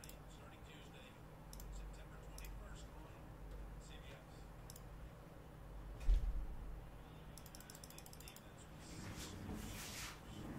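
Faint scattered clicks and taps, with a single low thump about six seconds in and a quick run of rapid clicks shortly after.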